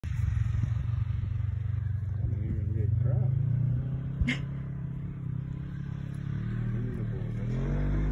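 Engine of a side-by-side UTV running as it is driven across the field, its pitch wavering with the throttle; it is louder in the first few seconds, dips, then builds again near the end as the machine heads closer. A single sharp click about four seconds in.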